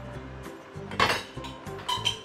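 Two short metallic clinks of cookware being handled, one about a second in and one near the end that rings briefly, over steady background music.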